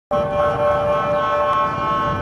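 A loud, steady held tone made of several fixed pitches, starting abruptly and not changing in pitch.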